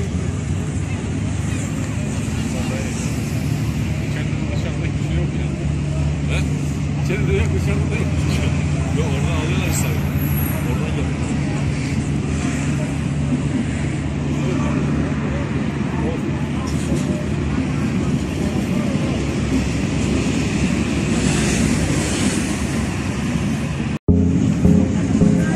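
Steady low rumble of road traffic and engines, with faint voices of people in the background.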